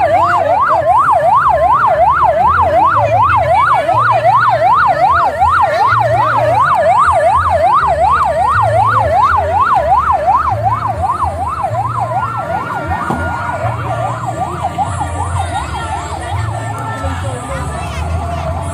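Police pickup truck's electronic siren on a fast yelp, sweeping up and down about three times a second. It fades away around twelve seconds in, leaving voices and a low rumble.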